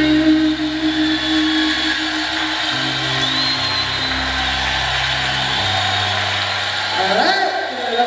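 A keyboard, electric bass and electric guitar band holding sustained closing notes at the end of a jazz-blues song, the low notes shifting a few times, over a steady noisy hiss. A voice rises briefly near the end.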